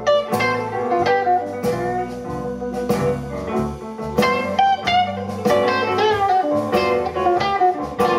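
Live blues band playing an instrumental passage: an electric guitar leads with bent notes over electric bass, drums and keyboard.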